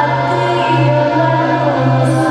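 Several voices singing together in the chanted song that accompanies a Minangkabau indang dance, over a steady low tone that pulses about twice a second.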